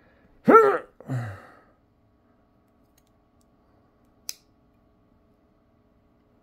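A short laugh, then a single sharp click about four seconds in from a two-blade lockback pocketknife as a blade is forced against its very stiff lock.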